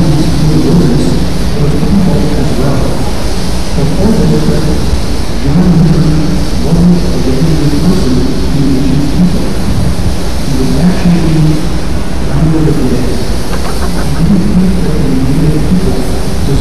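Loud, steady rumble of wind buffeting the camcorder's microphone, with muffled voices talking underneath.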